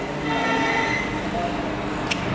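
TIG welding on a steel pipe: a steady low electrical hum from the welder and arc, with a faint high whine above it.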